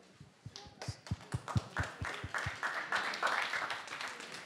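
Audience applauding: scattered single claps at first, thickening into a short spell of applause about two seconds in, then dying away near the end.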